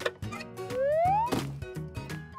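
A cartoon whistle sound effect rising in pitch for about half a second and ending in a sharp pop, over light background music with a steady bass line.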